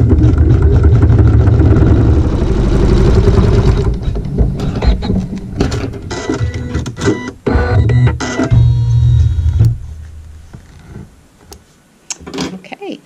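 Embroidery machine stitching a seam with regular thread: a fast, even mechanical run for the first few seconds, then a stretch of separate clicks and knocks that dies away near the end.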